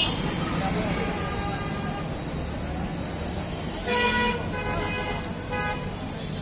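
Busy roadside traffic noise with two short vehicle horn toots, about four seconds in and again at about five and a half seconds, over a steady din of street noise and background voices.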